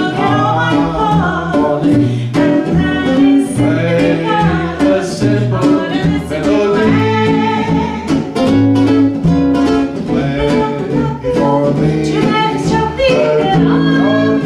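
Live acoustic duo of classical guitar and cello playing together, with a man singing over them.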